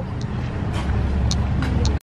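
Street traffic noise: a steady low rumble with a few faint clicks. It cuts off suddenly at the end.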